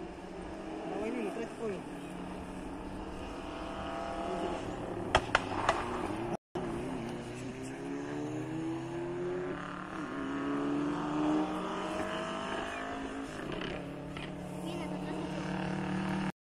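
A rally car's engine revving hard on a gravel stage, heard from a distance, its pitch rising in repeated climbs that drop back at each gear change. About five seconds in there are three sharp pops.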